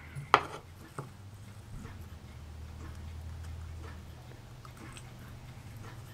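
A sharp click and then a fainter one from metal tweezers and a small clear plastic part being handled on a cutting mat, over a low steady hum.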